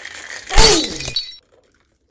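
A glass-shattering sound effect: a loud crash with a falling tone about half a second in, lasting under a second and cut off suddenly.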